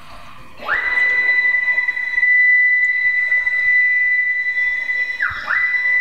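Langmuir CrossFire CNC plasma table's stepper motors driving the gantry and torch carriage through the break-in program: a high, steady whine. The pitch sweeps up about half a second in as the machine gets moving and holds while it travels. About five seconds in the pitch drops and climbs back, as the motors slow and speed up again.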